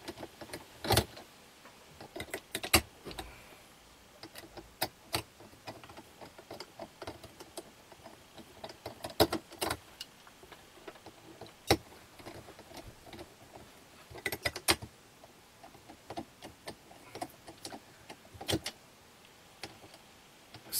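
Irregular light clicks and metallic taps, one every second or two, from hands working 14-gauge wires and the terminal screws of an electrical outlet in a metal wall box.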